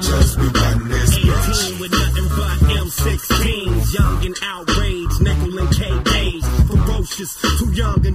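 Hip hop track: a heavy bass-driven beat with a rapper's voice over it.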